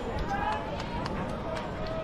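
Indistinct voices of spectators and players calling out across a youth baseball field, over steady outdoor background noise.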